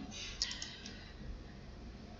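A few faint computer mouse clicks about half a second in, over a low steady hum of room noise.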